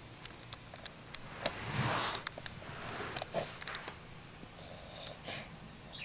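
A small child snuffling and breathing with effort close to the microphone, with scattered light plastic clicks and taps from a plastic Slinky coil she is handling and mouthing.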